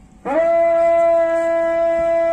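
A bugle sounding one long held note, starting a moment in with a slight upward scoop in pitch.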